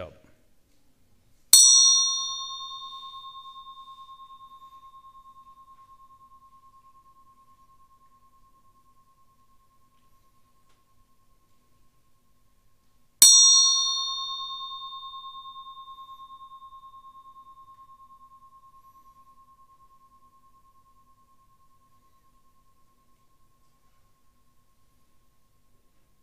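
A small metal meditation bell struck twice, about twelve seconds apart. Each strike has a bright, quickly fading shimmer and then one clear tone that rings on with a slight waver, dying away slowly over eight to ten seconds.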